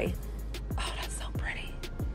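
Quiet whispered speech over a steady low hum.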